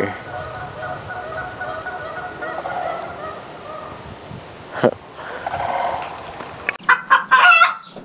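A flock of Canada geese honking, many overlapping calls at once, which fade out about four seconds in.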